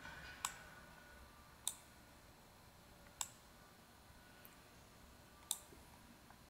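Faint computer mouse clicks: four sharp single clicks spaced a second or more apart, as items are selected and dragged.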